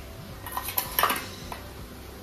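Steel spoon clinking against a steel bowl and plate as food is served: two quick clusters of clinks, about half a second and a second in, then a single light click.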